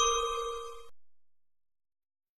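The last note of a short, bell-like chime jingle ringing out and fading, then cutting off abruptly just under a second in, leaving silence.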